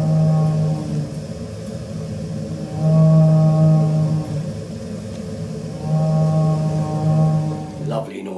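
Central heating boiler making a loud, low, steady droning hum like a ship's horn, swelling three times, about every three seconds. This kind of boiler noise usually means the boiler is clogged up with muck and debris.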